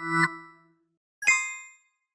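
Two short electronic chime sound effects. The first is a lower tone that swells up and fades. The second is a sharp, higher ding about a second later that rings and dies away quickly. They go with the animation drawing the line and marking the midpoint on the graph.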